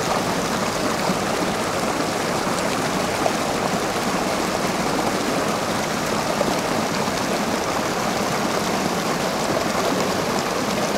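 Creek water rushing steadily over rocks in a small rapid, a constant even wash of sound.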